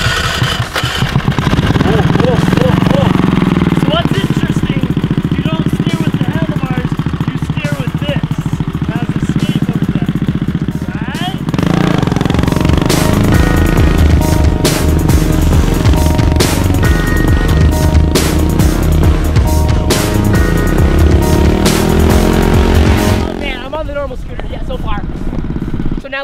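Small gasoline engine of a tracked off-road stand-up scooter (DTV Shredder) running and revving as it is ridden, with music playing over it. The sound steps up louder about halfway through and drops back near the end.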